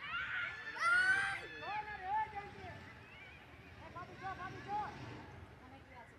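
Distant high-pitched voices shouting and calling across a football pitch, with one loud rising yell about a second in and fainter calls a few seconds later.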